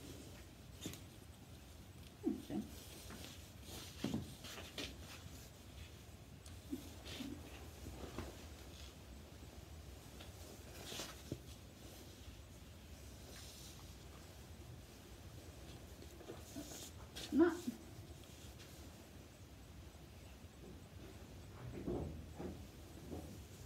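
Scattered soft rustles and light clicks of a lead rope and harness fittings being handled as the rope is threaded through a miniature horse's driving harness.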